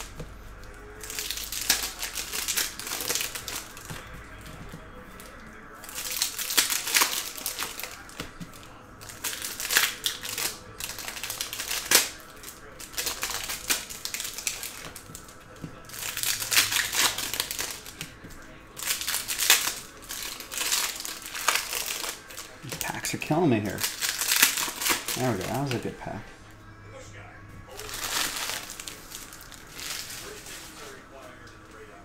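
Foil trading-card pack wrappers crinkling and cards being handled and dealt onto a table, in repeated bursts every second or two.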